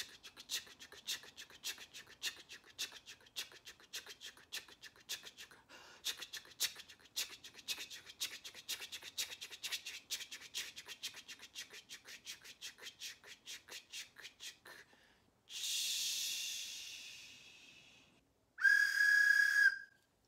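Rapid "ch-ch-ch" chugging imitating a steam train, about five strokes a second, stopping about fifteen seconds in. A fading hiss of steam follows, then a steady toot of a train whistle near the end.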